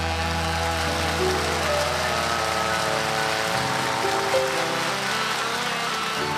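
Live band playing an instrumental passage of a pop song, with held synthesizer keyboard notes shifting over the full band; no singing.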